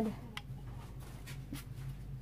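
Faint handling sounds at an open refrigerator: a few light clicks and rustles over a low steady hum.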